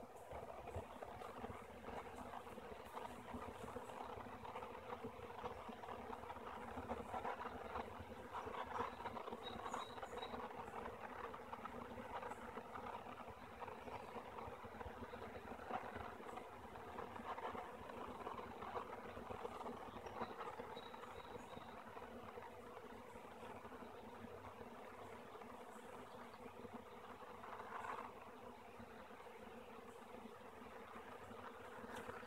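A swarm of honey bees in flight, a steady, faint buzzing hum of many wings, as the swarm gathers on and moves into a swarm trap.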